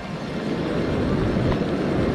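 Strong storm wind buffeting the microphone, a steady rushing noise that grows slightly louder.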